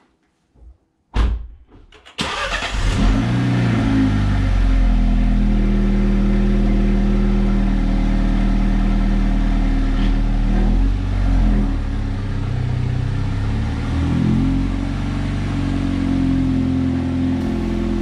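A MINI's engine starting: a sharp knock about a second in, then the engine catches with a brief flare of revs and settles into a steady idle. In the second half the note shifts and grows a little quieter as the car reverses away at low revs.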